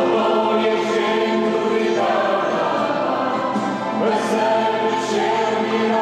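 Church congregation singing a hymn together, many voices holding long notes that move from one note to the next every second or two.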